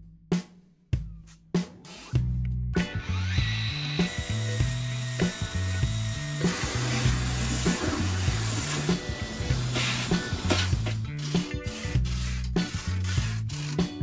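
Background music with a steady bassline, over a handheld power tool with dust extraction running steadily for several seconds as it cuts open the foil finboxes on a kitefoil board; the tool stops a few seconds before the end.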